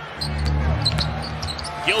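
Live basketball game sound in an arena: the ball bouncing on the court over a crowd haze and low, steady arena music.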